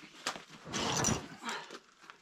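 A climber's forceful, breathy exhale of effort, lasting about half a second around a second in, while he holds a hard position on a boulder problem. A faint click comes just before it.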